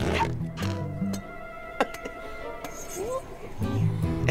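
Animated-film soundtrack: background music with steady low notes, a single sharp click a little before the middle and a short rising squeak near the end.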